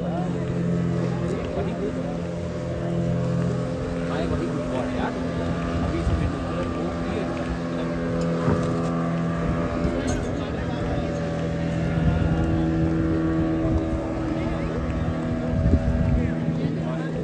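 Motorboat engine running steadily: a continuous drone with several steady tones, with people talking over it.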